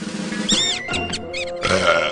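Cartoon music with a quick run of short, high squeaks that rise and fall in pitch, starting about half a second in, followed near the end by a fuller, brighter musical chord.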